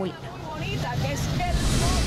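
Low rumble of a parked airliner's cabin, growing louder, with a few faint passenger voices in it.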